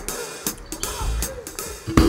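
Band music with the drum kit to the fore: cymbal and drum strokes over bass drum and low instruments, building to a loud hit near the end.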